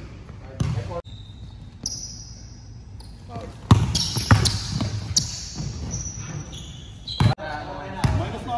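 A basketball being dribbled on a hardwood court, with irregular bounces rather than a steady rhythm. Sneakers squeak on the floor between the bounces as players move in a one-on-one drill.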